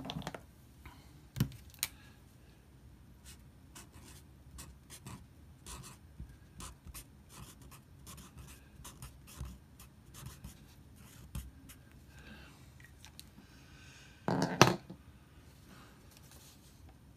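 Pencil writing on paper, a long run of short, irregular scratching strokes, typical of filling in a substitution on a scoresheet. A louder half-second rustle or knock comes about fourteen and a half seconds in.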